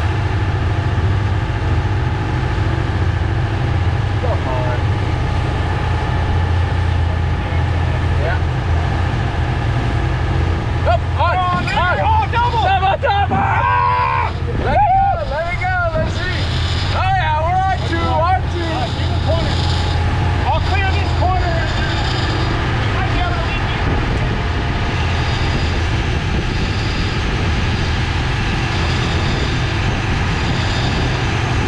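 A fishing boat's engine droning steadily while under way, over the rush of the wake and wind. Voices come in over it in the middle of the stretch.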